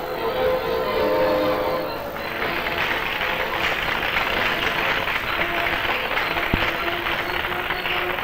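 Music holding a steady chord, then from about two seconds in a hall audience applauding over it, with the applause continuing to the end.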